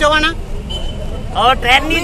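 A man speaking in an interview, breaking off for about a second before going on. Under his voice and filling the pause is a steady low rumble of outdoor background noise, with a brief thin high tone in the pause.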